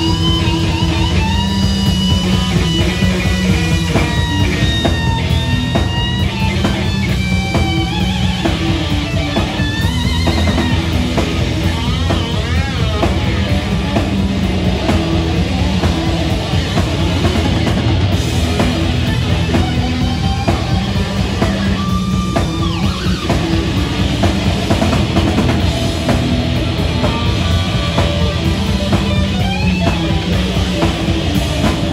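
Live rock band: a loud, distorted electric guitar lead on a Floyd Rose-equipped Fender Telecaster, with sliding bends and wavering whammy-bar pitch swoops, over bass and a drum kit through full amp stacks.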